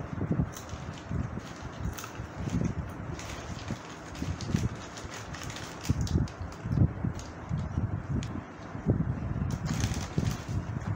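Plastic snack packets crinkling and rustling as hands dig into them, in short irregular crackles, with dull irregular bumps underneath.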